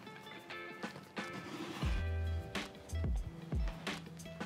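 Background music: soft instrumental with short pitched notes and low bass notes coming in from about halfway.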